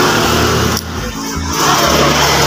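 A motor vehicle passing on the road outside, a loud, even rush of engine and tyre noise, with background music going on underneath.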